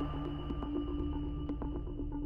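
Suspense background music: a held electronic drone of steady tones with a few soft ticks.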